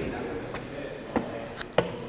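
Footsteps on a hard concrete floor in a large lobby: a few irregular knocking steps, one near the start and two more late on.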